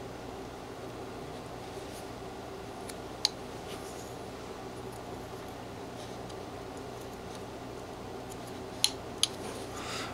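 Tip of a whittling knife making small, fine cuts in a wooden carving: faint cutting with a sharp click about three seconds in and two more near the end, over a steady low background hum.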